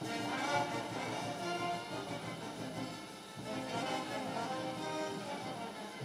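Brass band music playing quietly, with held notes from the horns.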